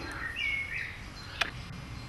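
Woodland ambience: a single short bird call about half a second in, then a sharp click a little under a second later, over steady background noise.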